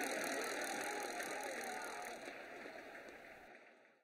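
Stadium crowd noise from a football match, a broad mass of voices cheering, fading steadily away and cut off shortly before the end.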